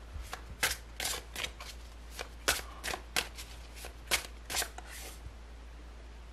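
A deck of tarot cards shuffled by hand: a run of short, sharp card slaps at an uneven pace of about two or three a second, stopping shortly before the end.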